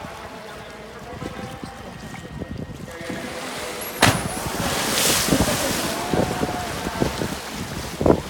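An orca leaping out of the pool and crashing back into the water: a sharp, loud splash about halfway through, then a couple of seconds of rushing, churning water.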